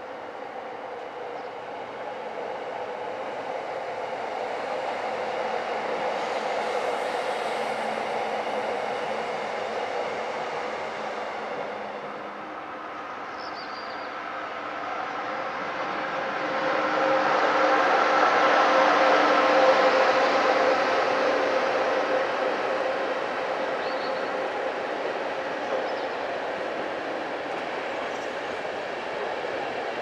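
Passenger trains running across a railway bridge, one after the other: the first train's running sound fades, then, about halfway through, a second train of coaches draws closer and grows loud. It passes at its loudest in the second half, then settles into a steady rolling sound.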